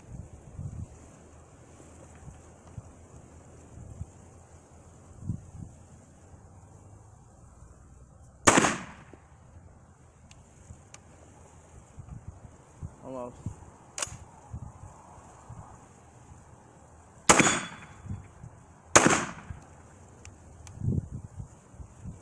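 TriStar Raptor semi-automatic 12-gauge shotgun firing 3-inch 00 buckshot: one shot, then a long gap with a single sharp click, then two more shots about a second and a half apart, each with a short echo. The action is not feeding the next round all the way through, which the owner puts down to the gun not yet being broken in.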